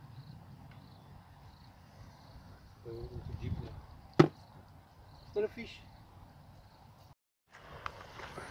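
A single sharp knock about four seconds in, loud over a faint background, with brief low voices before and after it.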